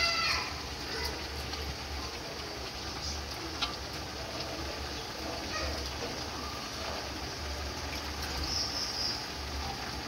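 Jackfruit and dried fish frying in a metal wok, a steady low sizzle, with a metal spatula clicking against the pan once about three and a half seconds in.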